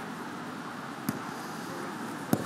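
A football kicked once, a single sharp thud about a second in, over steady outdoor background noise.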